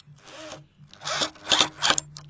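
Corded electric drill driving a screw through a mortise lock's metal faceplate into the wooden door edge, in short noisy bursts that grow louder, the three loudest in the second second.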